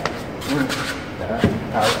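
A single knock about one and a half seconds in as drain pipes are handled under a sink cabinet, with a man's short spoken word near the end.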